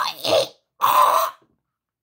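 A man's voice making two short non-word vocal sounds, the second breathy one starting just under a second in, each lasting about half a second.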